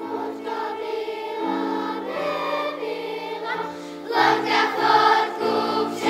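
Children's choir singing together, the voices coming in right at the start and growing louder from about four seconds in.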